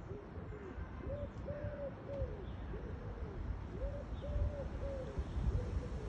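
Wolves howling together: several overlapping voices in short rising-and-falling howls at close pitches, repeating a few times a second, over a low rumble.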